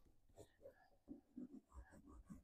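Near silence, with a few faint, brief scratching sounds scattered through it.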